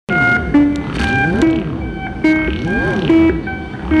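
Analog synthesizers playing a repeating electronic pattern: short held notes stepping between pitches, over pitch sweeps that rise and fall again and again.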